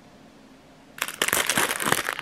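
Plastic packaging and foil sachets crinkling as they are handled, starting about a second in after a quiet moment.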